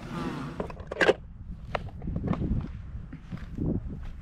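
Footsteps on dry grass and hay: soft, irregular crunches, with a low rumble of wind on the microphone. A sharp click about a second in.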